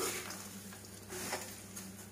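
Soft scraping and rustling of a spatula stirring dry fried poha mix in a kadhai, two brief strokes, the second about a second in, over a steady low hum.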